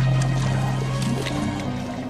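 Film score: a low held drone with creature sound effects over it.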